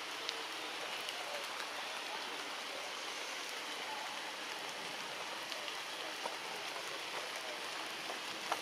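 Steady, even hiss of forest background noise, with scattered faint clicks.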